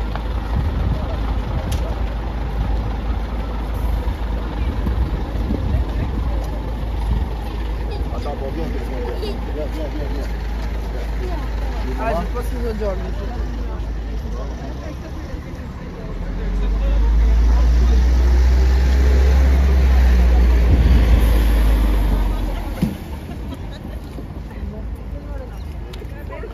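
Busy street sounds: a tour bus's engine running at idle and people talking nearby, with a louder low rumble for about six seconds past the middle that then drops away.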